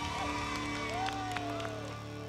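Background music with held, sustained chords.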